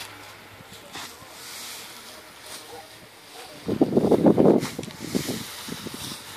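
Straw rustling faintly as it is pitched with a pitchfork, then wind buffeting the microphone in a loud low gust a little under four seconds in, with smaller gusts just after.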